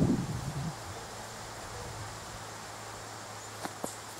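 A fiberglass measuring tape being handled over the top of a steel well casing: a brief low knock and rustle at the start, a faint steady low hum, and two light clicks near the end, over quiet outdoor background.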